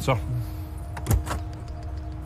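A front door being shut, with a sharp click about a second in and a weaker knock just after.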